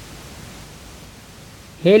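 Steady low hiss of background noise with no distinct events, then a man's voice starting near the end.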